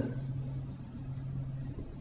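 Faint room noise with a steady low hum.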